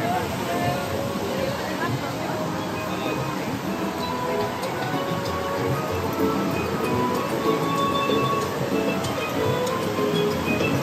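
Background music with sustained notes playing over outdoor park loudspeakers, with people talking nearby.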